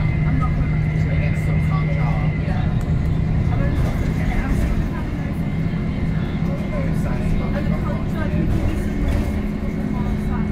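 A VDL SB200 single-deck bus under way, heard from inside the passenger saloon: a steady engine and drivetrain drone with a high whine that fades about two seconds in. The drone eases a little about halfway through.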